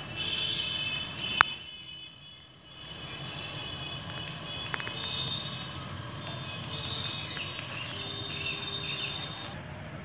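Outdoor ambience: a steady low rumble with high, thin chirping near the start and again through the second half. A single sharp click comes about a second and a half in, followed by a brief dip in level.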